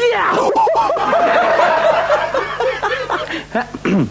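Laughter: a long run of short, high-pitched 'ha' bursts, easing off near the end.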